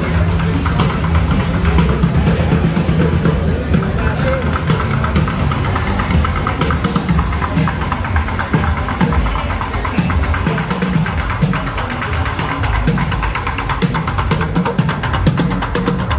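Street music with a heavy bass beat over crowd chatter. Near the end, rapid drumming with sticks on upturned plastic buckets comes in from a street drummer.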